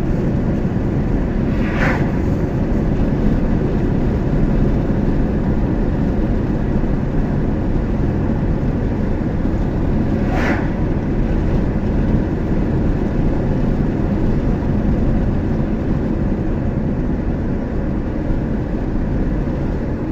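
Steady road and engine noise of a moving car, heard from inside the cabin, with two oncoming vehicles passing by in brief hisses, about two seconds in and again about ten seconds in.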